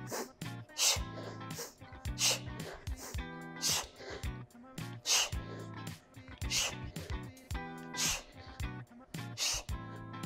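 A woman's sharp, hissing exhales, one about every second and a half in time with her kettlebell swings, over background music.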